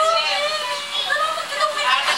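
Young children's high-pitched voices, babbling without clear words.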